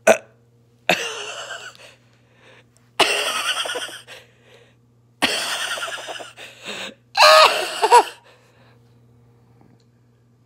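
A baby's vocal noises with a mouthful of food, in four separate bursts of about a second each. The last burst is a higher, wavering whine.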